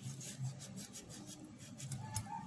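Kitchen knife sawing back and forth through a lemon, a faint rasping at about four strokes a second.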